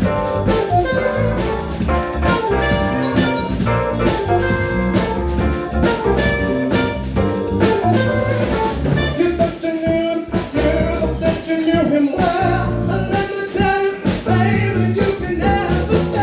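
Live band playing an up-tempo number: Yamaha keyboard, electric guitar and a steady drum beat, with a voice singing over it in the second half.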